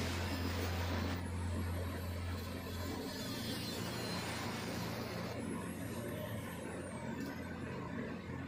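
Angle grinder with a cut-off disc running and cutting through a galvalume light-steel channel, a steady grinding noise with a high whine that rises about a second in, rises again past the middle and falls away near the end.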